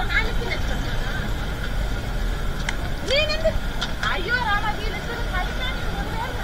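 Indistinct voices of people talking, a few short phrases about three and four seconds in, over a steady low rumble of vehicles.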